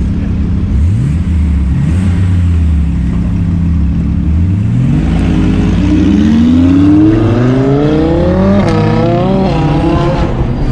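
Sports car engine revving and accelerating on the street. A few short rising revs come in the first half, then one long climbing rev runs from about the middle to near the end.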